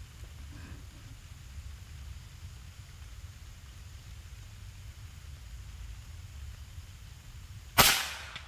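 A single sharp shot from a Naga Runting PCP air rifle firing a 15-grain NSA pellet, near the end, after several seconds of a low, steady rumble.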